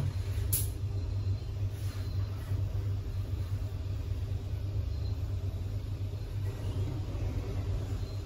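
Schindler inclined traction lift travelling, heard from the cabin: a steady low hum and rumble from the drive and car on its incline, with a short click about half a second in.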